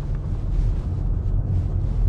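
Steady low road and tyre rumble inside the cabin of a Genesis EQ900 Limousine on an underbody-noise test drive. No rattles or knocks stand out: the underbody noise from the worn suspension doesn't come much into the cabin.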